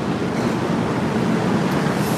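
Steady rushing background noise of an outdoor city street, with no distinct events.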